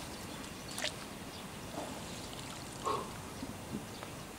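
Outdoor pond ambience: a steady background hiss broken by a sharp click a little under a second in and two brief faint calls, around two and three seconds in.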